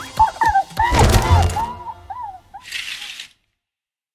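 Cartoon soundtrack music with a bending melody line, a thud about a second in, then a short hiss near the end before the sound cuts off.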